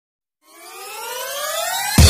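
Synthesized riser effect: a pitched electronic tone gliding steadily upward and growing louder, starting about half a second in.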